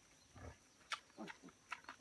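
A few faint, short grunts from newborn piglets foraging in leaf litter, with a couple of small sharp clicks.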